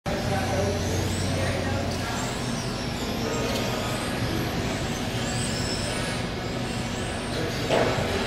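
Several electric 1/10-scale RC touring cars racing together. Their motors whine, overlapping and rising and falling in pitch as they accelerate and brake, over a steady hum.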